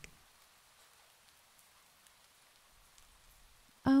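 Near silence: a faint, even hiss in a pause between spoken lines.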